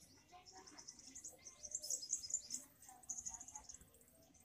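Faint bird chirping: quick, high chirps repeating with short gaps.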